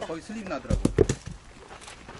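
Mountain bike knocking against rock as the rider hops it up a rocky step: a quick cluster of sharp knocks about a second in.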